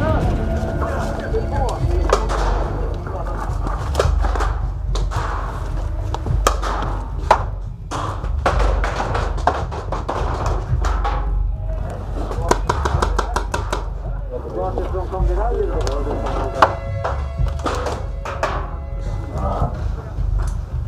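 Paintball markers firing, sharp pops coming singly and in quick strings of several shots, with dull thunks of hits and knocks against plank walls. Indistinct voices come and go between the shots.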